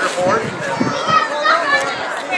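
Crowd of people chattering and calling out together, with high children's voices among them.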